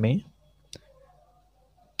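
A single short, sharp click in a pause between spoken words, followed by near silence.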